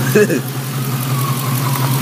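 1997 Mustang GT's 4.6-litre two-valve V8 idling steadily, heard from the open engine bay, with a faint whine that falls slowly in pitch over the second half.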